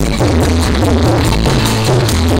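Live band music played loud through a stage PA system: a steady bass line and regular drum beat under melodic lines, from a dangdut band with drums and electric guitar.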